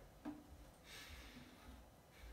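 Near silence: room tone, with a faint breath about a second in.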